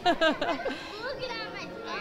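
Children's voices and chatter around the microphone, louder in the first half second and then quieter.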